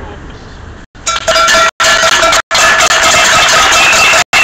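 Loud, distorted sound of a protest street parade cuts in about a second in: a steady held pitched tone over dense noise, broken several times by brief dropouts in the audio.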